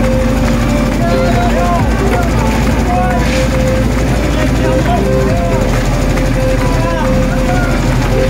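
An engine runs steadily at an even pitch, under the voices and calls of a crowd of workers passing concrete by hand.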